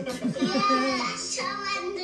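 A young child's high voice singing over background music, heard through a television's speaker.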